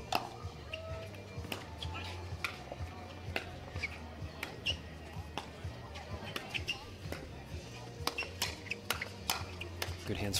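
Pickleball rally: paddles striking the plastic ball back and forth in an irregular series of sharp pops, with short sneaker squeaks on the hard court and music in the background.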